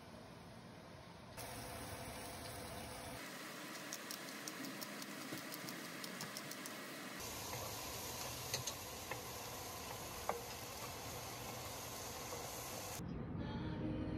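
Sliced vegetables sizzling in a frying pan, a steady hiss full of fine crackles, with a few sharp clicks of a spatula against the pan as they are stirred.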